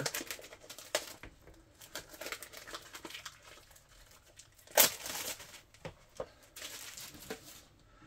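Plastic wrapping crinkling and tearing as a sealed package is pulled open by hand, with one louder rip about five seconds in.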